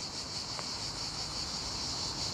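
Steady, high-pitched chorus of insects singing in the background.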